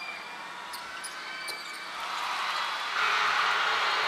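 Arena crowd noise during live basketball play, with a few faint ball bounces on the hardwood court. The crowd gets louder about three seconds in.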